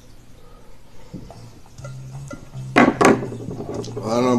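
Two quick clinks of bottles or glassware being handled on a counter, about three seconds in, over a faint steady low hum.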